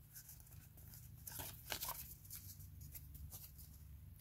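Faint rustling and soft clicks of Pokémon trading cards being slid through by hand, over a low steady hum.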